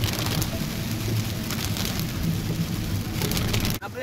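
Heavy rain hitting the windscreen and roof of a moving car, heard from inside the cabin as a steady hiss over the low rumble of the car on the wet road.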